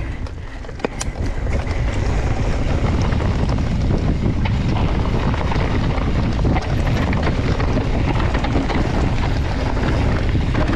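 Wind buffeting the camera's microphone on a mountain-bike descent, over the rumble and rattle of knobby tyres on a loose, stony dirt trail, with a sharp click about a second in. It grows louder a couple of seconds in as the bike picks up speed.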